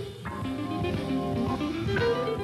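Jazz trio playing live: Hammond B3 organ chords sustained under archtop jazz guitar, with bass and drums. The music briefly drops in level just at the start, then carries on.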